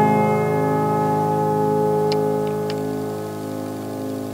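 A grand piano chord held with the sustain pedal, ringing and slowly dying away, with a few faint clicks about two seconds in.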